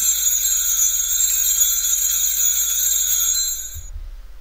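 Altar bells rung in a continuous jingling peal at the elevation of the chalice during the consecration. The ringing cuts off sharply just before the end.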